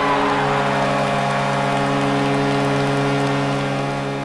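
Hockey goal horn sounding one long, loud, steady chord over a rushing roar of crowd cheering, the kind of goal celebration used as an intro sting.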